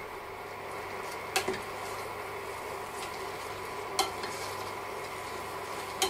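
Creamy orzo and asparagus sizzling softly in a pot on an induction hob, being stirred with a spatula. A few short knocks against the pot come about a second and a half in and again near four seconds.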